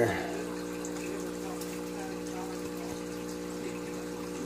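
Steady hum of aquarium equipment, with a faint wash of water from the tank's sponge filter.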